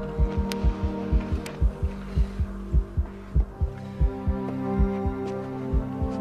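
Film soundtrack: a low heartbeat beating in double beats under a sustained droning chord. About four seconds in, a higher held chord enters and the heartbeat slows.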